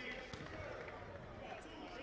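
Quiet basketball-arena ambience: faint distant voices and a few soft knocks.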